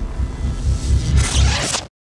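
Electronic logo sting: synthesized whooshes over a pulsing bass, swelling into a bright hiss in the second half before it cuts off suddenly just before the end.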